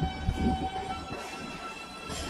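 New York City subway L train running into the station: low wheel rumble and a few knocks from the rails, under a steady electric motor whine that shifts pitch about a second in.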